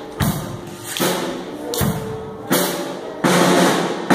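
A children's band playing live on drum kit and keyboard: loud drum and cymbal hits about every three-quarters of a second over held notes.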